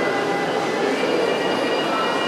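Busy indoor shopping mall ambience: a steady wash of indistinct crowd noise and footsteps echoing in a large hall, with a few faint high steady tones running through it.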